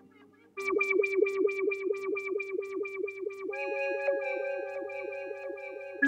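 Electronic music: a fast pulsing synthesizer pattern, about four to five notes a second, comes in suddenly about half a second in, and held synth tones join it a little past the middle.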